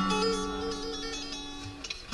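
Acoustic bluegrass string band of guitars, mandolin and bass playing between sung lines: a held chord rings and slowly fades, with quick, light picked notes high above it in the first half.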